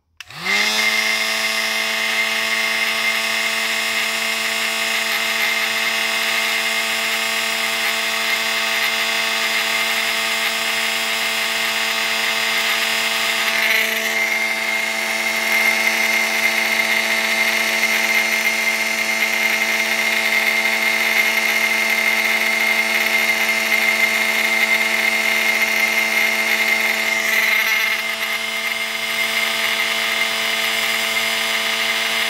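Electric heat gun switched on and spinning up within a second, then running steadily with a motor hum and a high whine over the rush of its fan, as it heats a solder-seal connector to shrink the tubing and melt the low-temperature solder inside. The tone shifts slightly about halfway and again near the end.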